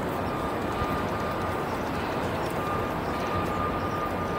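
Steady outdoor city background noise, an even rumble with no distinct events, with a faint thin high tone that comes and goes.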